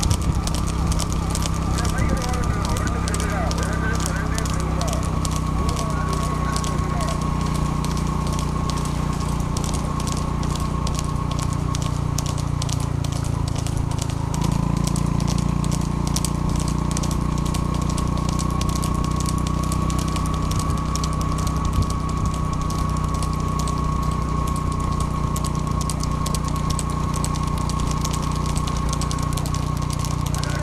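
Steady motor-vehicle engine drone with a continuous high tone over it and a dense crackle throughout, shifting slightly about fourteen seconds in.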